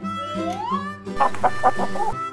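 Hen clucking, a quick run of about five clucks in the second half, over cheerful backing music with a rising slide in the tune.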